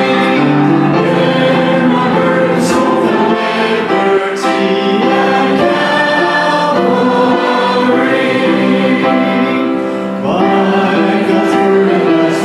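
Church worship singing: three vocalists on microphones lead a hymn, the congregation's voices joining in like a choir, over musical accompaniment.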